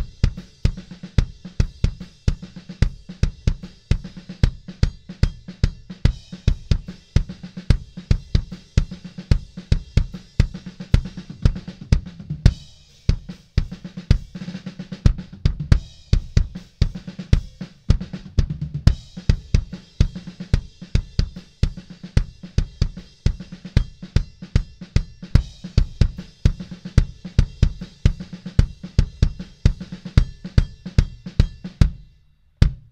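Recorded kick drum track played back on its own: a steady beat of kick hits, heavy in the low end, with snare and cymbals of the kit faintly behind it. Playback breaks off briefly about twelve seconds in. The Crane Song Peacock vinyl-emulation plugin is switched in and out on the track; with it on, the kick has more body and more low frequencies.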